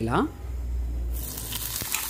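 Hot tempering oil with mustard seeds and curry leaves sizzling as it is poured from a small pan onto ground beetroot chutney in a bowl. The hiss cuts off about a second in.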